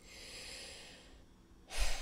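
A woman's breathing in a pause between sentences: a soft breath, then a quicker, louder intake of breath near the end, just before she speaks again.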